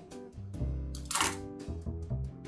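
Light bossa nova background music with guitar and double bass and a soft ticking beat. About a second in, one short crisp noise from the scissors cuts across it.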